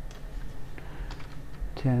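Several separate computer keyboard and mouse clicks as a number is entered into a software dialog box, over a low steady hum.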